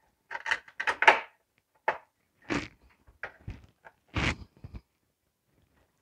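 Plastic CPU fan shroud being lowered and fitted back into a desktop PC's case: a run of short plastic and metal knocks and clicks, loudest about a second in, stopping about a second before the end.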